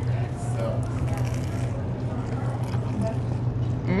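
Faint biting and chewing on a toasted sandwich and a burger, over a steady low hum and faint background voices.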